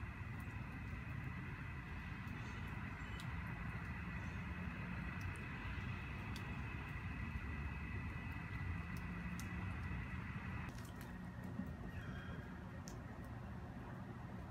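Steady outdoor background: an even hiss over a low rumble, with a faint steady tone, that drops a little about ten and a half seconds in. A few faint scattered ticks.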